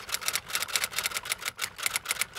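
Typing sound effect: a quick, even run of key clicks, about seven a second, accompanying on-screen text being typed out.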